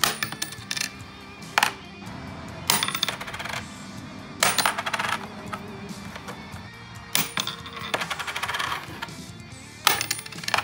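Quarters tossed onto a wooden tabletop and tiny wooden cornhole boards, about six throws, each landing with a sharp clink followed by a short rattle as the coin bounces and settles. Background music plays underneath.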